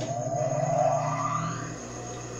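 A motor's whine rising in pitch for about a second and a half, then fading, over a steady low hum.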